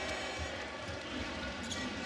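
Basketball arena crowd noise, steady, with a ball bouncing on the hardwood court as play moves up the floor.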